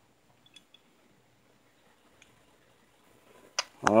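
Mostly quiet, with a few faint small clicks of steel pistol parts as a thumb safety is worked into a Colt 1911 frame, and a sharper click near the end.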